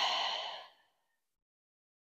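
A woman's audible sigh, a deep breath out that trails off and ends under a second in.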